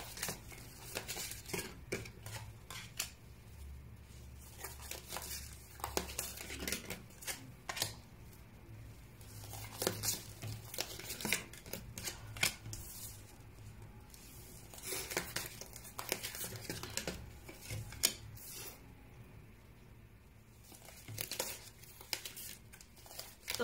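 Tarot cards being drawn off a deck in the hand and laid down one by one on a wooden tabletop: irregular soft snaps, slides and rustles of card stock.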